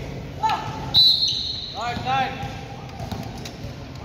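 A basketball bouncing on a wooden gym court, with scattered sharp impacts and players' short calls and shouts. A brief high squeak comes about a second in.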